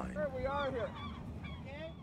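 A flock of birds honking: many short rising-and-falling calls overlapping at different pitches, over a low rumble.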